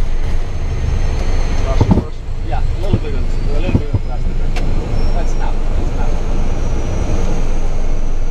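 Cockpit noise of a Cessna Citation V rolling down the runway: a steady, loud low rumble from its twin turbofan engines and the ground roll, with a thin, steady high whine above it.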